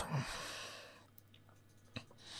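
A person breathing out after speaking, a soft breath that fades away over about a second, over a faint steady hum. A single faint click near the end.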